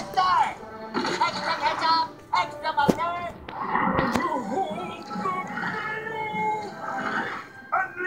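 Animated film soundtrack played from a screen and heard in a small room: background music under voices shouting and grunting, with a couple of sharp cartoon impact sounds about three and four seconds in.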